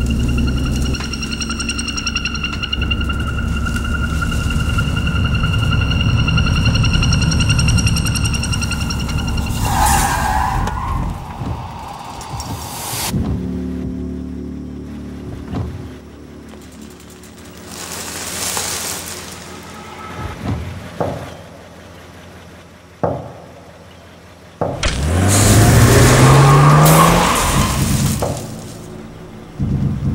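Film soundtrack of an old car's engine running with a low rumble under a high, held music drone, then quieter stretches with a few sharp hits, and near the end the engine revving up loudly, its pitch rising for about three seconds.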